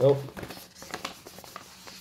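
Paper rustling and crinkling as a folded instruction sheet is opened out by hand, with a few faint irregular clicks.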